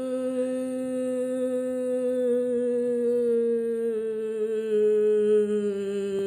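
A single voice holding one long, unbroken hummed note that slowly sinks in pitch, with a small step down about four seconds in.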